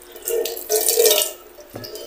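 Water poured over a person's head, splashing and streaming off the face for about a second before dying away.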